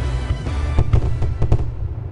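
Fireworks going off over music: a run of sharp bangs about a second in, then the music cuts off near the end and the last bursts fade into a low rumble.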